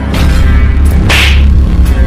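Slap sound effect: a sharp whip-like swish about a second in, laid over a loud, deep rumbling boom.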